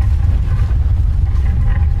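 Loud, steady low rumble from an animated title sequence's sound effects, with faint held tones above it.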